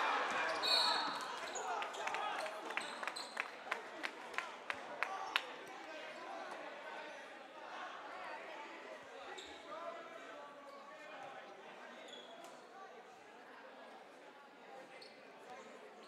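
Gym crowd noise that swells at a missed shot and fades to chatter, with a brief high referee's whistle just under a second in. After that comes a run of basketball bounces on the court floor, about two a second for a few seconds.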